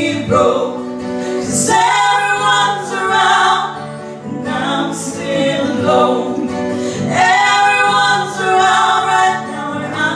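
Two women singing a duet into handheld microphones in long, swelling phrases a few seconds each, over an instrumental accompaniment that sustains between the phrases.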